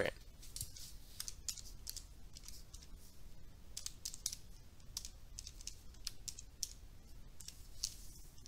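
Faint, scattered clicks and taps of a stylus on a drawing tablet as handwriting goes onto the screen.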